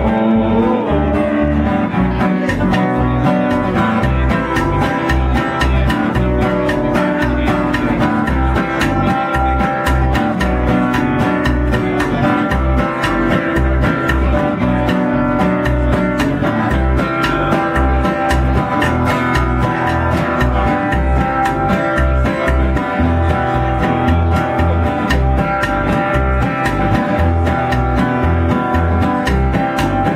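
Acoustic guitar and upright bass playing an instrumental passage of an americana song, the bass sounding a steady run of low notes under the guitar.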